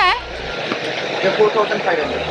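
Steady rushing background noise with faint voices talking underneath.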